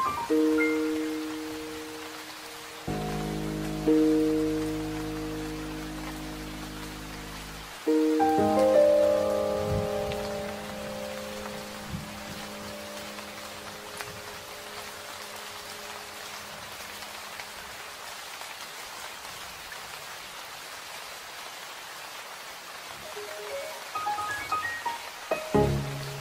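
Steady rain falling, an even hiss, mixed with soft, slow instrumental music: held chords and notes in the first ten seconds, then mostly rain alone, with a few notes returning near the end.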